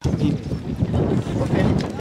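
Wind buffeting the microphone in irregular gusts, a loud rumbling noise that comes in suddenly and stays heavy in the low range.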